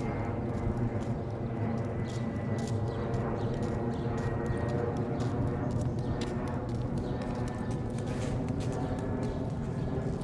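Footsteps of several people walking on a paved quay: scattered knocks of shoes and sandals over a steady low drone.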